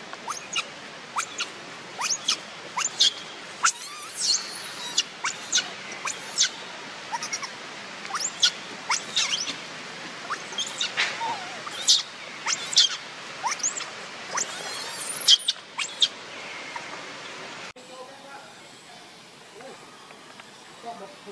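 Infant macaque squealing over and over in short, high-pitched cries, about one or two a second: a hungry baby begging to nurse. The cries stop shortly before the end.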